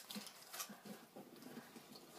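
Faint rustling and a few light knocks as items are handled and a handbag is rummaged through.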